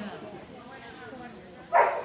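A dog barks once, short and loud, near the end, over background talk in a large hall.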